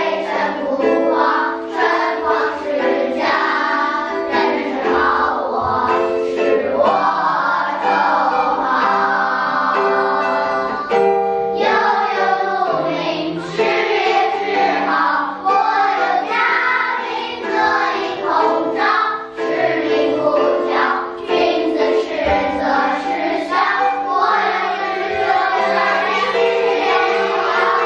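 Children's choir singing a song, with one longer held passage near the middle.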